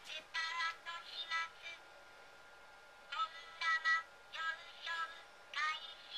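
Asahi Robocco beer-server robot's high-pitched synthesized voice in two short phrases, as it starts its pouring cycle and begins to lift the can.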